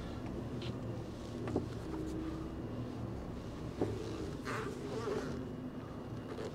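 Iveco truck's diesel engine running at low revs, a steady low drone heard inside the cab, as the truck is moved back a short way.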